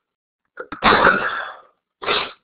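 A person sneezing: a couple of short catches of breath, then one loud explosive burst lasting just under a second, with a shorter breathy burst near the end.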